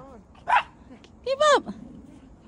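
Small dog barking: a few short, sharp barks, the loudest pair near the end.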